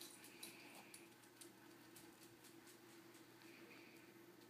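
Near silence: a few faint clicks of a dog's claws on a concrete floor in the first second and a half, over a faint steady hum.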